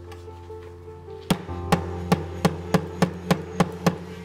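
A hammer tapping a steel T-nut into a hole in plywood: about nine sharp knocks, starting about a second in and coming a little faster as they go, over steady background music.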